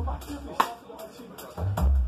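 Drum kit played live, with sharp cross-stick clicks on the snare over low bass. A strong stroke comes about half a second in, then a sparser gap, and the hits and bass return near the end.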